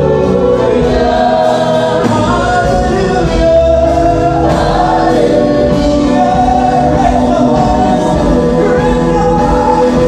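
Gospel worship song: a woman singing lead through a microphone over a band, with a choir of voices singing along in sustained, held notes.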